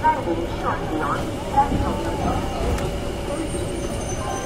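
Several people talking at once on a busy railway station platform, over a steady low rumble.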